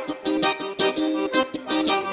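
Live forró band playing an instrumental passage: a quick run of melody notes over a drum beat.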